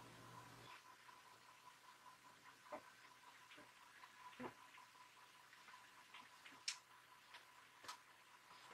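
Near silence: quiet room tone with a faint steady high hum and a few scattered faint clicks.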